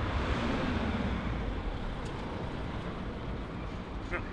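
Outdoor city street noise: a steady rumble of passing traffic that fades slowly.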